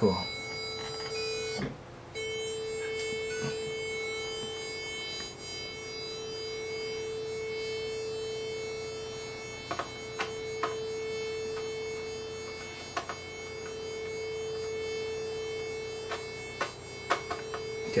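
Kiwi-3P (upgraded Roland JX-3P) analog synthesizer holding a steady A at 440 Hz, with both oscillators on square waves. The note breaks off briefly about two seconds in and then resumes. Its level swells and sinks slowly as the two slightly detuned oscillators beat against each other, and a few light clicks come in the second half.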